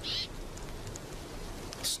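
Little tern giving one short, high call at the start, over a steady background hiss.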